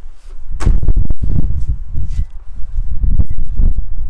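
Wind rumble on the microphone and footsteps on block paving, with a few sharp knocks a little under a second in.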